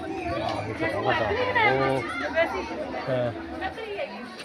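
People talking, several voices overlapping in casual chatter.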